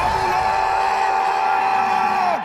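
A cartoon character's long yell held on one pitch for about two seconds, dropping away at the end. A string of low falling sounds runs underneath.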